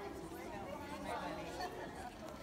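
Chatter of many voices talking at once, children's voices among them, with no single clear speaker.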